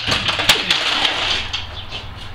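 Aluminium folding ladder being moved, its metal parts knocking and scraping, with a sharp clank about half a second in. The noise dies down in the second half.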